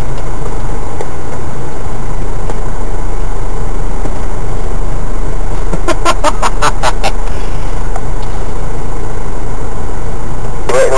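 Off-road vehicle's engine and drivetrain running steadily, heard from inside the cab as it crawls along a rutted, muddy lane. About six seconds in there is a quick run of six or seven sharp clicks within about a second.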